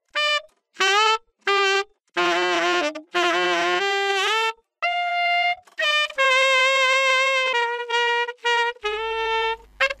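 Saxophone playing alone with no beat or backing: a run of short notes and phrases with silent gaps between them, some with a wavering vibrato, then longer held notes in the second half.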